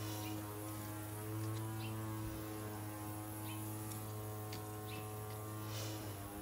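A steady low hum with even overtones throughout, with a few faint short scrapes of a hand trowel digging into loose garden soil.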